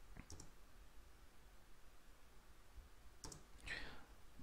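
Near silence with a few faint computer mouse clicks, near the start and again near the end.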